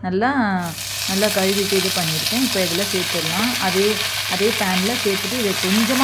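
Fresh gongura (sorrel) leaves hitting hot oil in a non-stick pan and frying, the sizzle starting suddenly about a second in and holding steady. A low pitched sound that rises and falls, like humming, runs under it.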